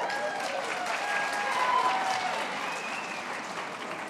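Auditorium audience applauding, with a few voices calling out over the clapping. The applause swells to its loudest about two seconds in, then fades.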